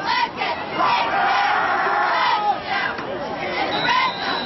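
High school football crowd in the stands shouting and cheering while a play runs, swelling into a sustained yell about a second in.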